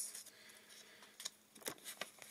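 Faint handling noise: two short soft clicks about half a second apart, in the second half.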